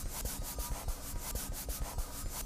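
Pen scribbling on paper, a rapid run of scratchy back-and-forth strokes, about eight to ten a second.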